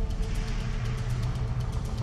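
A motor vehicle engine running, a steady low hum with a fast, even ticking.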